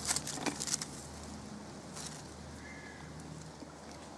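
Leaves and stems rustling as a hand pushes through leafy undergrowth, a cluster of short crackles in the first second and one more about two seconds in, over a quiet outdoor background.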